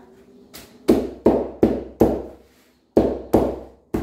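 Wide-bladed pizza knife chopping down through a baked pizza onto its cardboard base: about seven sharp strokes, roughly three a second, with a short pause halfway through.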